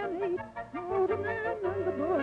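Comedy background music: a wavering, warbling melody over a pulsing bass line.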